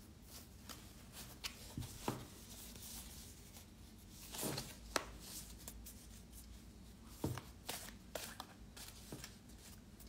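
A deck of large metaphorical associative cards being shuffled by hand: faint rustling and clicking of cards in several short bursts, the sharpest snap about five seconds in.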